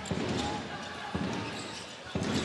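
A handball bouncing on the wooden court floor of a large sports hall, with a sharper thud about a second in, over the steady hubbub of the arena crowd.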